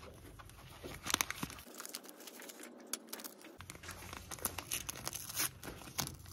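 Small paper sachets crinkling and rustling in the hands in short, irregular bursts, with light taps as baking powder is shaken out into a glass bowl.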